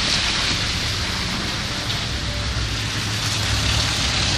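Steady outdoor noise on a slush-covered street: a continuous hiss with a low rumble, a little stronger past the middle.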